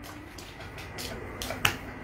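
A few sharp clicks, the loudest about one and a half seconds in, over low room noise.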